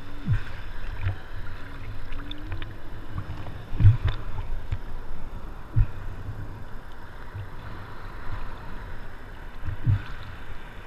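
Sea water sloshing and lapping against a surfboard and the action camera mounted on it, with low thumps of water slapping the board, the loudest about four seconds in and another near six seconds.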